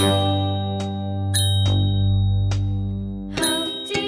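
Background music: a long held chord with a few bell-like chimes ringing over it, then quicker notes start again near the end.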